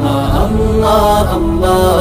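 Bangla gojol (Islamic devotional song): a sung vocal line in a chanting style, held and gliding notes over a steady low backing, part of a repeated 'Allah' refrain.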